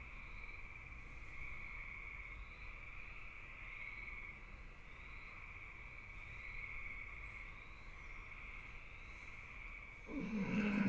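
Faint, steady chirring of night insects, a continuous high trill with slight pulsing, over a low hum.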